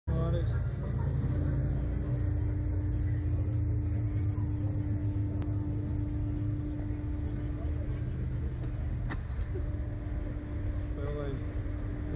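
Catapult ride machinery running with a steady low rumble and a steady hum that sets in about a second in, with a couple of faint clicks.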